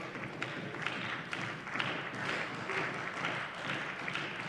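Steady applause from members of a parliament chamber, a dense run of hand claps with no speech over it.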